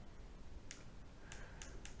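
A few faint, short clicks in a quiet room as a small lamp is switched on, several of them close together near the end.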